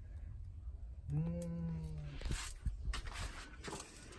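A person's voice holding one drawn-out, level note for about a second, then a few light clicks.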